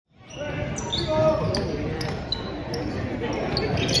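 Basketball game sound in a gymnasium: a ball bouncing on the hardwood court, short high squeaks, and spectators' voices talking and calling out in the bleachers.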